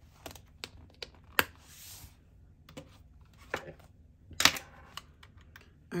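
Desk-handling sounds of a planner binder with plastic pouches being closed and a plastic calculator picked up: scattered light taps and clicks, with a brief rustle and two louder knocks, about a second and a half in and near the middle.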